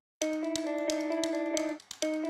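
Quiet intro of a recorded metalcore song: a plucked guitar phrase on a few held notes, with light regular ticks over it. The phrase repeats, and the sound drops out briefly near the start and again just before the end.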